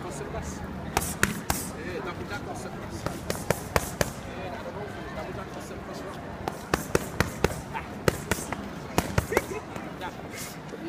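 Boxing gloves hitting focus mitts in quick combinations: sharp slaps in runs of two to four, with a pause of about two seconds around the middle while the pair move around.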